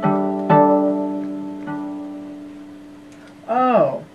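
Electric baseball-bat violin plucked like a guitar: notes struck at the start, about half a second in and again later, each ringing on and slowly fading. Near the end a short note swoops up and back down in pitch.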